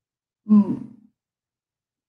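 A woman's short sigh, falling in pitch, about half a second in and lasting about half a second; the rest is silent.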